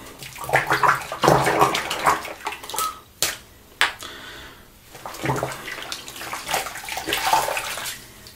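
Water from a bathroom tap running and splashing in two spells, as in rinsing at the sink during a wet shave. Two sharp knocks come in the gap between them, a little past the middle.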